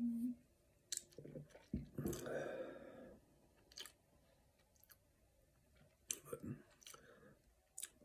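Mouth sounds of someone tasting a sip of straight rye whisky: a swallow, a breathy exhale about two seconds in, and scattered wet lip-smacks and tongue clicks.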